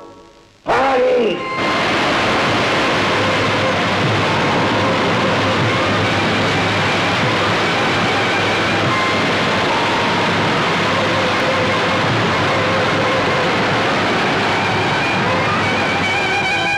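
Rushing flood water: a loud, steady surge of churning waves that bursts in suddenly about a second in and keeps up without a break, with a short sweeping whoosh at its onset.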